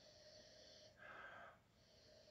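Very faint breathing through the nose while sipping from a glass: a soft hiss in the first second, then a shorter, lower breath about a second in.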